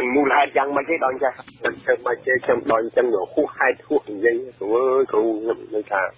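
A person speaking without pause in a Khmer radio news report, with the thin, band-limited sound of a radio broadcast and a faint steady hum underneath.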